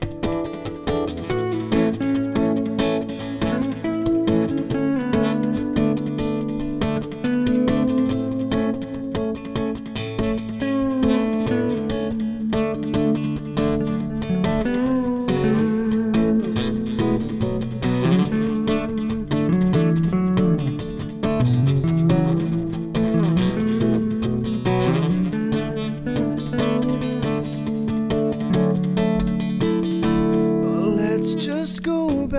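Instrumental guitar break: an acoustic guitar strums chords under a lead melody on electric guitar with bent and sliding notes.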